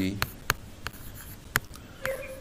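Pen tip tapping and scratching on a hard writing surface while writing by hand, with a few sharp taps, the loudest about half a second in and another about one and a half seconds in.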